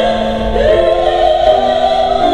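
A female classical singer singing in operatic style, accompanied by a grand piano. About half a second in she starts a new, long held note with vibrato over sustained piano chords.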